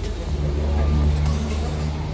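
A motor vehicle's low rumble that swells to its loudest about a second in and then eases off, over background music.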